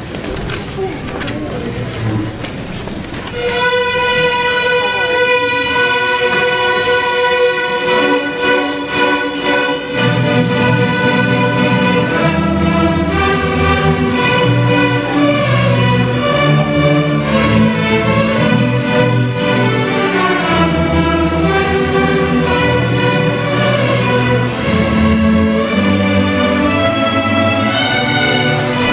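Elementary school string orchestra of violins, cellos and basses playing. About three seconds in, a long held note begins; lower parts join a few seconds later, and from there the whole orchestra moves through changing notes and chords.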